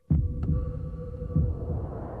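Electronic soundtrack for a title sequence: deep low thuds like a heartbeat over a steady hum, starting suddenly.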